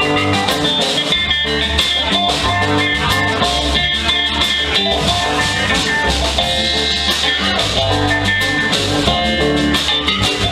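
Live band playing an instrumental passage: electric guitar over electric bass, drum kit and keyboard, with no singing.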